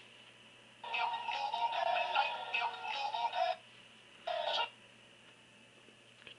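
Auto-tuned singing with music from a YouTube clip, coming through the tablet's small built-in speaker, thin and without bass. It plays for about three seconds, breaks off, then comes back in a short burst about a second later: choppy playback from the Gnash Flash player, which cannot keep up on the ARM tablet.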